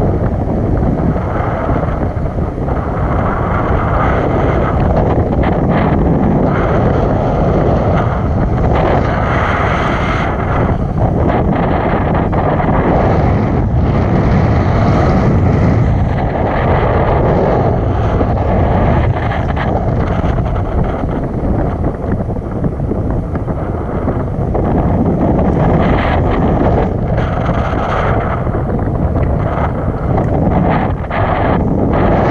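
Wind from a paraglider's flight rushing over the camera's microphone: a loud, steady rush that swells and eases.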